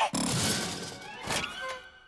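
Animated-cartoon sound effects of a refrigerator: a sudden rushing whoosh lasting about a second, then a short knock, as Masha and the penguin are shut inside to cool off.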